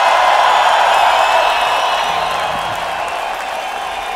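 Audience applause from a crowd, swelling up and then slowly fading.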